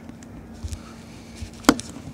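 Faint handling of a small plastic spray-paint cap and a hobby knife on a wooden board, with a few soft knocks, then a single sharp click near the end as the metal knife is set down on the board.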